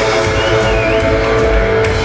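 Heavy metal band playing live with distorted electric guitars, holding a sustained chord at a steady loud level.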